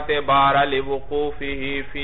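A man's voice in a drawn-out, sing-song chanting delivery: a lecturer intoning text rather than plainly talking.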